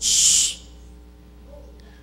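A short, sharp hissing breath into a handheld microphone, lasting about half a second.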